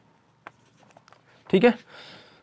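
Marker pen writing on a whiteboard: faint ticks and scratches of the tip, with one sharper tap about half a second in. Near the end a man's voice sounds briefly.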